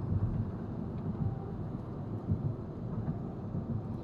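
Steady low rumble of a car's engine and road noise heard from inside the cabin, driving in slow highway traffic.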